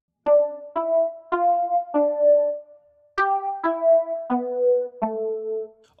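Ableton Live's Basic Sine Keys electric-piano-like synth patch playing a short melody, triggered note by note by a voice sung into Dubler 2 and converted to MIDI. There are two phrases of about four notes each, with a short gap between them.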